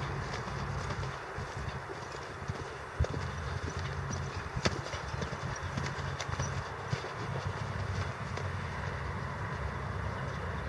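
A horse's hoofbeats on the soft sand of a riding arena, over a steady low rumble, with a few sharp knocks scattered through.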